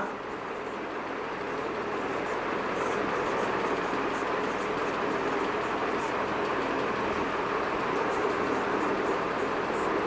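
Marker pen writing on a whiteboard, with faint short strokes now and then, over a steady rushing background noise.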